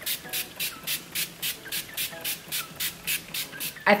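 NYX matte finishing setting spray misted from its pump bottle onto the face: about fourteen short, even hisses in a quick steady rhythm, roughly three to four a second.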